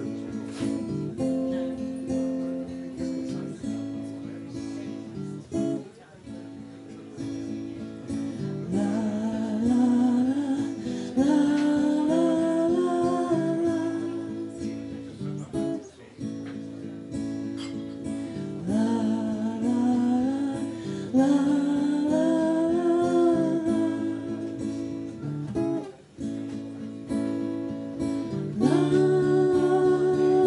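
Acoustic guitar playing a song's opening, joined twice by a singing voice holding long notes that slide in pitch.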